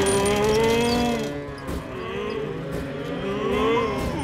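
Cartoon tractors mooing like cattle as they tip over: several long, overlapping moos that slide slowly up and down in pitch, over a low rumble.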